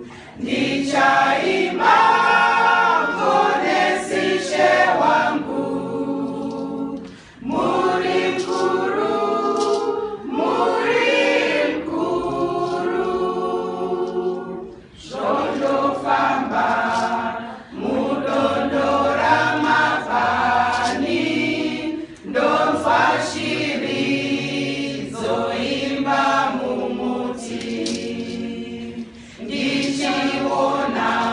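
Women's choir singing together in long phrases, with brief dips in level between lines.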